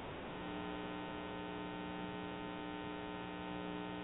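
Steady electrical mains hum: a low, even buzz with many evenly spaced overtones, coming in about a third of a second in and holding unchanged.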